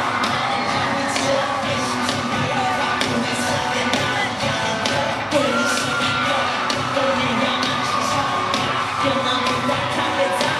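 Live K-pop/hip-hop concert music over an arena sound system: a sung vocal over a steady drum beat.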